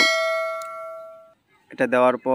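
A single bell 'ding' sound effect from the subscribe-button notification-bell animation: one strike that rings out and fades away over about a second and a half.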